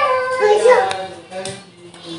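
Singing voices, a child's among them, holding long notes that trail away over the last second.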